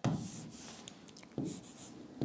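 A pen writing on a smart board: a sharp tap of the tip at the start and another about a second and a half in, with faint scratchy strokes between.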